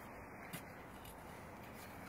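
Quiet outdoor background noise, a faint steady hiss, with one small click about half a second in.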